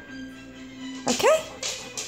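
Yellow Labrador retriever giving one short vocal call about a second in: his 'talking' in answer to being asked to say bye.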